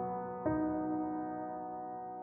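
Slow, soft piano music: a chord struck about half a second in and left to ring and fade, with no singing.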